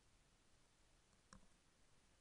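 Near silence: faint room tone, with one short, faint computer mouse click about a second and a half in.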